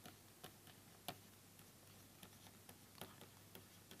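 Near silence broken by faint, irregular ticks of a stylus tapping and scratching on a pen tablet during handwriting.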